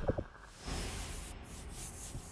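Logo sting sound effect: the tail of a deep whoosh dies away at the start, a few quick clicks follow, then a soft airy hiss-like shimmer rises just under a second in and runs on quietly.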